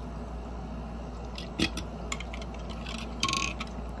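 Light clicks and taps of small diecast toy pieces, a pickup truck and car trailer, being handled and fitted together, with a short rattle about three-quarters of the way through.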